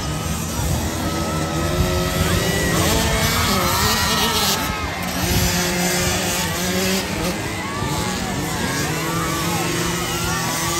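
Several small 50cc and 65cc youth motocross bikes racing, their engines revving up and down and overlapping as they ride around the dirt track.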